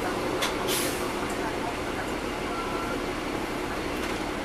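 Interior running noise of a 2009 NABI 40-SFW transit bus heard from the rear seats: its Caterpillar C13 diesel engine and engine cooling fans running steadily. A short click and a brief hiss come within the first second.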